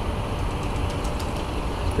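Steady low rumble of city street traffic, with a few faint light clicks about a second in.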